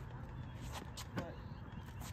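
Tennis practice off a ball machine on a hard court: a few sharp knocks of tennis balls being fired and bouncing, clustered around a second in, between racket strokes.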